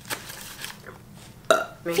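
A person burps once, a short loud belch about one and a half seconds in.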